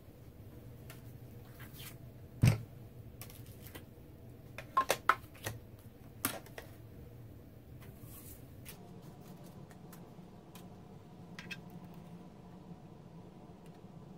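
Plastic cutting plates and a die handled and set onto a manual die-cutting machine: one sharp knock about two seconds in, a few quick clicks around five and six seconds, then only a faint steady low hum.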